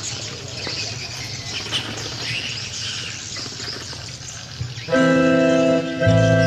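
Outdoor crowd ambience with birds chirping. About five seconds in, traditional ceremonial music starts suddenly and loudly: a wind-instrument ensemble holding long, steady notes.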